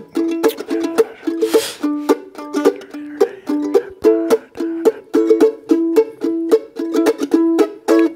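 Mandolin playing short, clipped strummed chords in a steady bluegrass rhythm, about two or three strokes a second. It runs through the tag's chord changes without the quick four chord.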